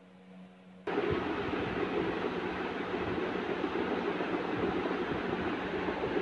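A steady rushing background noise, like a room fan or air conditioner, that starts abruptly about a second in after near quiet with a faint hum.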